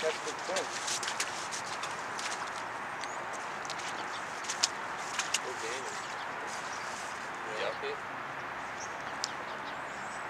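Steady outdoor hiss with faint, indistinct distant voices and a few sharp clicks in the middle and near the end.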